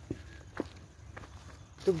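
Hands firming loose, dry soil around a planted sapling: three soft crunches about half a second apart. A man's voice starts near the end.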